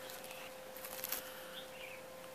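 A steady faint hum, with a few quiet clicks about a second in and a faint wavering chirp near the end.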